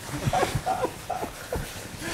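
A man laughing softly in a few short bursts, with rustling on the microphone.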